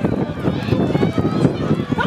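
Indistinct chatter of spectators' voices close to the camera, several people talking at once without clear words.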